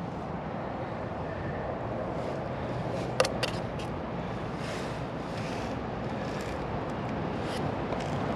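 Steady outdoor background noise, with one sharp click a little over three seconds in and a few faint ticks.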